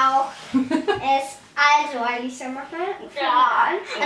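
Only speech: young girls talking.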